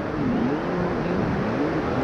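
Steady noise of sea surf and wind at the beach, with a faint wavering tone underneath.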